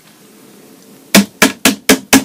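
A rapid run of six sharp, loud strikes, about four a second, starting about a second in.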